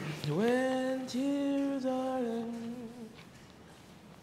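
A woman singing to herself without accompaniment: three long held notes over about three seconds, the last one drifting slightly down, then stopping.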